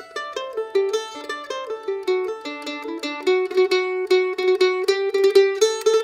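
A-style mandolin picked with a plectrum, playing an Irish dance-tune phrase as a run of crisp, quick notes. Its long notes are filled with trebles, fast down-up-down picked triplets on one note.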